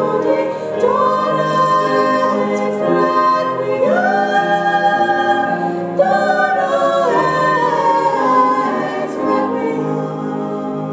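Female vocal ensemble singing in harmony, several voices at once, with long held notes.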